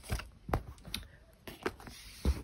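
Handling noise: a few light, scattered taps and clicks from a hand on a round cardboard box and the phone being moved.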